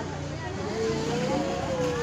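Street ambience: distant voices over the low, steady hum of a passing vehicle's engine.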